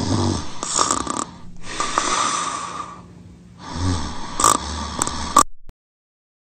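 Loud snoring: a deep snore on the in-breath, a breathy hissing out-breath, then another deep snore. The sound cuts off suddenly near the end.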